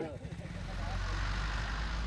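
A truck's engine running with a steady low rumble, starting about half a second in.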